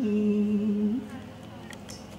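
A voice humming or chanting one long, steady held note that breaks off about a second in.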